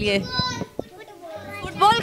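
Children's voices in a small group: a child speaking at the start and again near the end, with a quieter stretch between. Steady background music can be heard under the voices from about halfway through.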